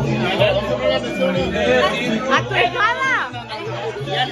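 Party chatter: several people talking over one another over background music with a steady bass line. About three seconds in, one voice gives a loud, drawn-out exclamation that rises and falls in pitch.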